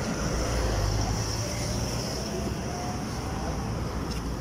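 Steady low rumble of vehicle noise from road traffic, a little stronger in the first half and easing slightly toward the end.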